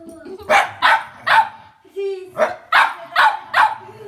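A fox terrier barking at another dog that is pestering it: about seven short, sharp barks in two runs, three then four, with a short, lower drawn-out sound between them.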